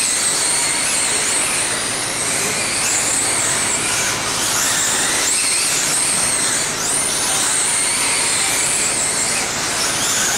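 Several 1/10-scale electric RC sprint cars racing on a dirt oval: high-pitched electric motor whines that rise in pitch as the cars speed up, again every couple of seconds, over a steady noisy background.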